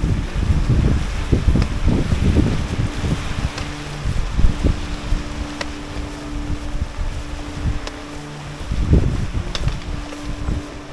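Wind buffeting the microphone in uneven gusts, heaviest in the first few seconds and again about nine seconds in.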